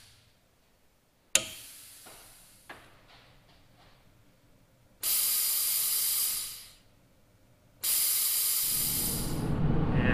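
A sharp click, then two bursts of steady, high-pitched hiss a few seconds apart. A low rumble builds under the second burst near the end.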